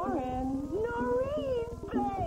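A woman's drawn-out, excited exclamation on the phone, her pitch swooping up and falling away twice, over light background music.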